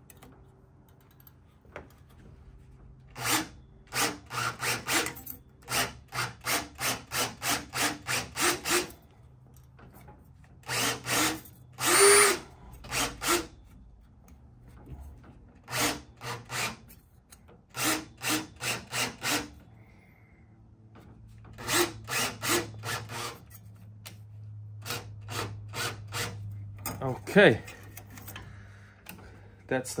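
Cordless Schwartmanns Beady swaging machine running in short repeated bursts, with pauses between runs, as it rolls a male swage into the edge of a small galvanized steel band.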